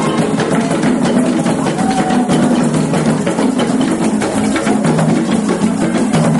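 An ensemble of traditional African hand drums, strap-slung goblet drums and tall standing drums, played live together in a dense, continuous rhythm.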